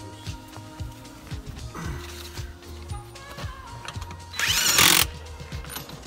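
Background music with a steady beat. About four and a half seconds in, a loud burst of noise just over half a second long comes from a tool at the vehicle's wheel.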